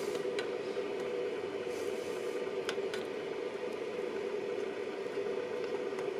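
Steady hum of a switched-on Anycubic Photon resin 3D printer, with a few faint ticks as resin is stirred in its vat.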